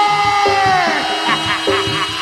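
Live East Javanese jaranan gamelan music: repeating low struck-metal notes under a long held high note that sags in pitch and fades about a second in.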